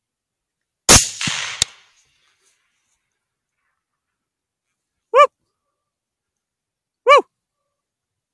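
A rifle shot cracks about a second in, with a ringing tail and a second sharp crack under a second later. Then two short barks come about two seconds apart, each rising and falling in pitch.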